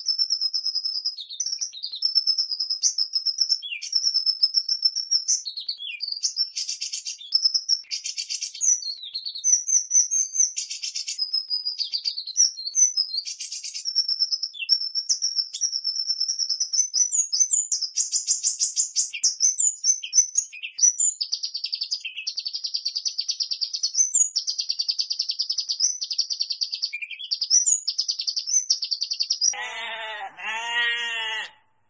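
Hummingbird, a hermit, chirping: a near-continuous run of rapid, high-pitched squeaky notes broken by short buzzy trills.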